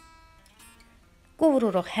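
Faint acoustic guitar background music, a few held notes. A woman's voice starts speaking loudly about one and a half seconds in.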